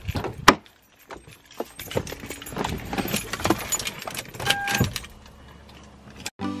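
Car door latch clicking open sharply, then keys jangling and rustling in the driver's seat of a Lexus SUV, with a short electronic beep about four and a half seconds in.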